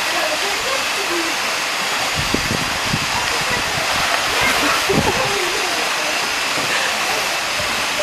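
Steady rush of water pouring into a seal pool.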